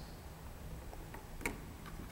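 Three light clicks from a student compound microscope being handled as its revolving nosepiece is turned to the 40x objective, the loudest about one and a half seconds in, over a faint steady hum.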